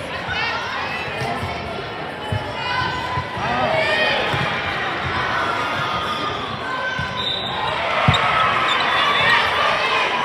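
Indoor volleyball play in a large, echoing sports hall: balls being struck and bouncing, with a sharp hit about eight seconds in, and shoes squeaking on the court floor over a steady hubbub of player and spectator voices.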